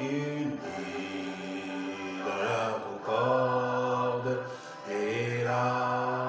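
A man's voice singing slow, drawn-out notes without clear words, chant-like, each note held steady for about two seconds with short breaths between.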